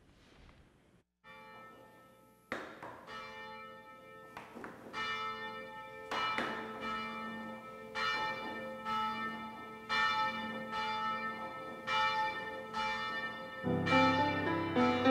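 Church bells ringing: after about two seconds of near quiet, a run of struck strokes begins, each ringing on into the next, growing louder toward the end, as the call to worship.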